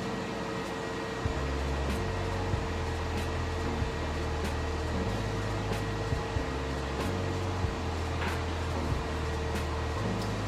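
Steady hum of an IPL treatment machine's cooling fan, with a constant mid-pitched tone over it. Low tones underneath shift in pitch every second or so.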